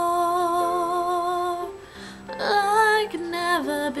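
A woman singing solo, holding one long note with vibrato, breaking briefly for breath just under two seconds in, then singing a further phrase that starts higher and steps down.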